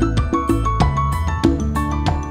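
Upbeat instrumental children's song music with a steady drum beat and bright keyboard notes.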